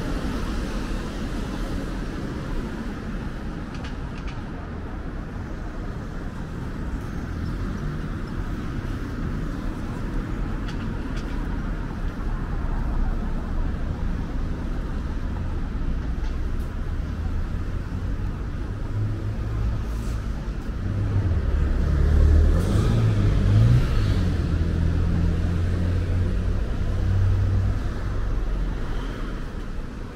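Road traffic on a city street: a steady rumble of cars driving past. About two-thirds of the way in, a louder engine swells close by, its low note wavering up and down, then fades.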